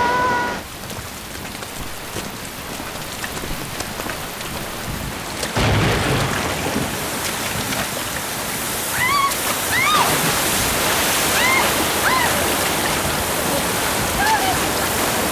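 Heavy rain and rushing floodwater, a steady noise that grows louder about five and a half seconds in. From about nine seconds, several short, high voice cries ring out over the water.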